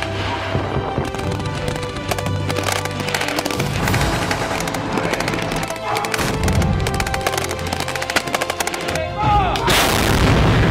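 Rapid machine-gun fire in quick strings of shots, over background music, with a heavier, louder boom near the end.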